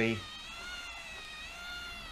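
Magnorail drive motor and cogs running with a steady, high-pitched whine of several tones that waver slightly. This is the layout's known noise problem, which wrapping the motor in cloth, packing foam around it and oiling it with WD-40 have not cured.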